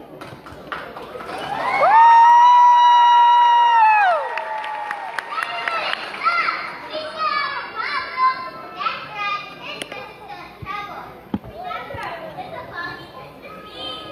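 A high voice rises into one long, loud held call for about two seconds and falls off, followed by overlapping children's voices talking and calling out in a large hall.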